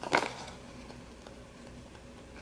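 A sheet of planner stickers being handled, with a short paper rustle just after the start.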